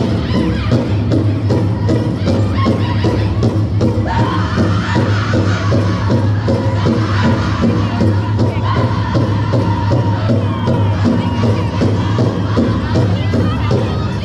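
Powwow drum group playing a straight traditional song: a steady drumbeat struck together on a large drum, with men singing high over it.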